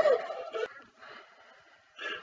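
A boy's laugh with a warbling, gliding pitch, trailing off within the first half second, then a short knock and near quiet.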